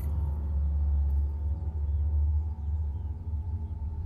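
Deep, steady rumbling drone from a horror film's soundtrack, with faint sustained tones above it.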